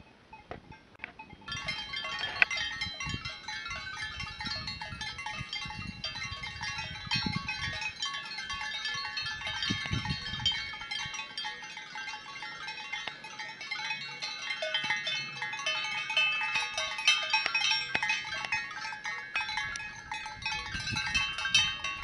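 Many bells on a grazing flock of sheep jangling together in a dense, continuous clinking that fills in about a second and a half in.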